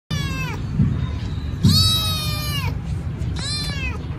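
Hungry young tabby kitten meowing three times, high-pitched, each call falling in pitch at its end; the middle meow is the longest and loudest. A steady low hum runs underneath.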